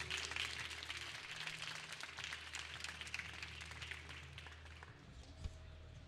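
Audience applauding, the clapping fading away over a few seconds.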